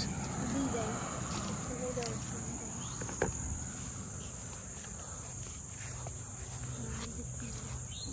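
Steady high-pitched chorus of crickets, with footsteps and rustling through the garden plants and a sharp click about three seconds in.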